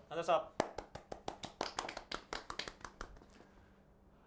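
A few people applauding in a small room: quick, irregular hand claps begin about half a second in and die away after about three seconds.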